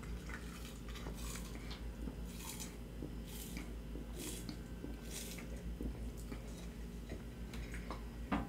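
Soda sipped through a plastic straw from a can: a run of short, hissy sips, about one a second, over a low steady hum.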